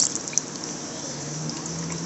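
Melted candle wax pouring in a steady stream from a metal pouring pitcher into a metal candle mold.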